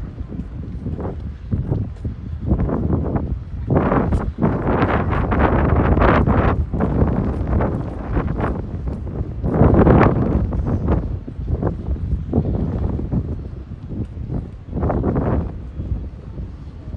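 Wind buffeting the microphone: a low, gusty rumble that swells loudly twice, about four seconds in and again about ten seconds in, with a smaller gust near the end.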